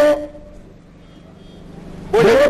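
A man's loud voice ends on a drawn-out note just after the start. A pause of faint, steady background hum follows before his voice returns at the very end.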